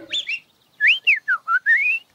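Cartoon bird chirping in whistled notes. There are a couple of short chirps, then a run of whistles that swoop down and up, ending on a long rising glide.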